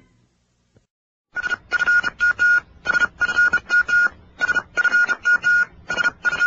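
A string of about fourteen short electronic beeps, all at the same high pitch, in an uneven rhythm. They start after a second of silence.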